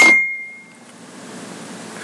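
A single sharp clink of a hard object being knocked, with a thin high ring that fades away within about a second, followed by faint room tone.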